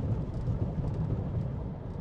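Steady low road rumble heard inside the cabin of a Radar RD6 electric pickup as its tyres and suspension run over choppy, broken concrete road panels.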